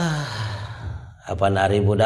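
A man's voice lets out a long sigh that falls in pitch and trails off into breath. About a second and a half in, he resumes a steady-pitched, chant-like repetition of the same syllables.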